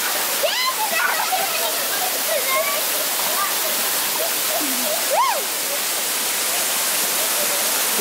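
Steady rush of water pouring over rocks in a stream below a waterfall, with children's voices calling over it and one high rising-and-falling call about five seconds in.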